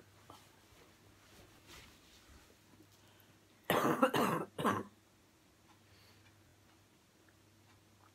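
A person coughing: a quick run of two or three coughs about halfway through, against a quiet room.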